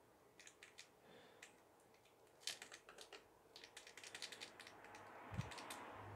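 Faint scattered clicks and light taps of a metal palette knife working acrylic paint, in quick runs about two and a half and four seconds in, with a short low thump near the end.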